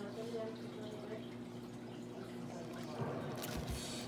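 Quiet sipping of a drink through a plastic straw from a plastic cup, over a television playing faintly in the background.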